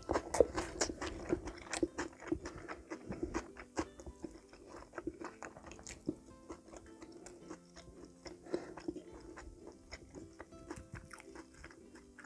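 Close-miked eating sounds of a spicy pork-bone stew (gamjatang): chewing, with a dense run of sharp wet clicks and smacks from the mouth, loudest about half a second in.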